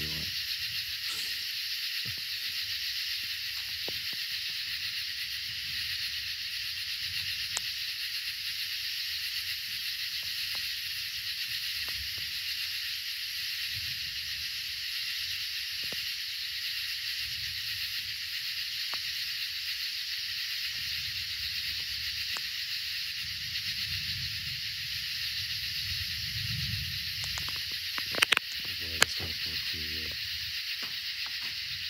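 Steady high-pitched chorus of night insects, an unbroken hiss-like drone. A faint low rumble rises in the last few seconds and is followed by a few sharp clicks near the end.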